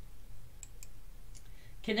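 A few light computer-mouse clicks, short sharp ticks at about a second's spacing or less, as a point is selected on an on-screen map.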